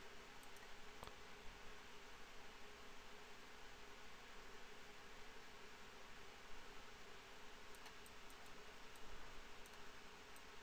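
Near silence: faint room hiss with a steady low hum, and a few faint computer mouse clicks, one about a second in and a cluster near the end.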